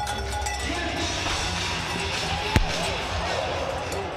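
Arena crowd noise with music playing over the PA while a bull bucks in the arena, and one sharp thud about two and a half seconds in.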